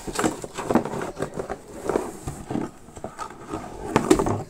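Plastic toy parts and their packaging being handled, giving a run of irregular light knocks and rustles.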